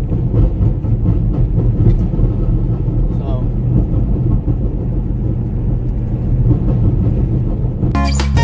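Steady low rumble of a vehicle's engine and tyres heard from inside the cab while driving along a road.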